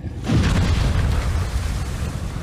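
An explosion sound effect: a sudden boom a little after the start, trailing into a low rumble that slowly fades.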